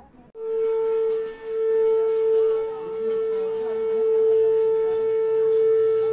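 Conch shell (shankh) blown in a long, steady, loud note that starts suddenly. It dips briefly about a second and a half in, then is held again.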